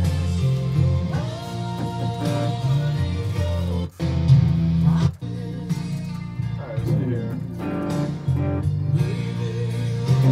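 A recorded song playing: a voice singing a melody over guitar and sustained low notes. It cuts out sharply for a moment twice, about four and five seconds in.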